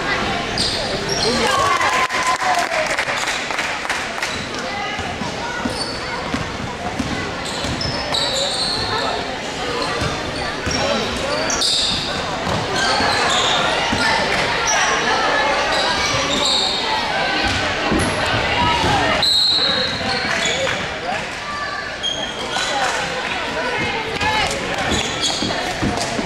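Gym crowd talking and calling out during a basketball game, with a basketball bouncing on the hardwood floor and short high squeaks of players' shoes on the court.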